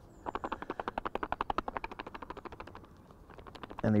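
Balanced wafter hookbaits rattling inside a small screw-lid pop-up pot shaken hard by hand to coat them in liquid glug: a quick, even clatter of about a dozen knocks a second that fades out near the end.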